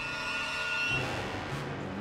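Background film score: a held high note that ends about a second in, followed by a low sustained tone.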